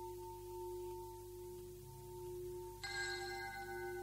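Intro music of sustained bell-like ringing tones: a steady low ring throughout, joined by a brighter, higher bell strike about three seconds in.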